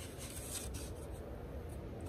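Faint rubbing and rustling, with a few soft scrapes over a low steady rumble, as a painted wooden bellyboard is handled.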